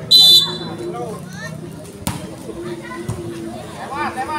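A referee's whistle blows one short, shrill blast, signalling the next serve in a volleyball rally. About two seconds later a single sharp hit sounds, the serve striking the volleyball.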